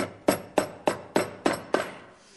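A shoemaker's hammer tapping tacks into a shoe sole in an even rhythm, about three strikes a second, seven in all, each with a short ring.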